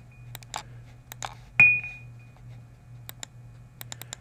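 Computer mouse clicking a few times in quick succession. About one and a half seconds in comes a single bright ping that rings briefly, over a steady low hum.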